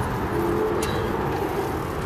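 Steady low rumbling of a four-wheel pedal cart rolling along a paved path, mixed with wind on the microphone, with a single sharp tick about a second in.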